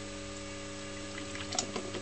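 Steady electrical mains hum from a rewound microwave-oven transformer powering an HHO dry cell at about 25 amps, with a soft fizz of electrolysis gas bubbling from the cell's plates during plate conditioning.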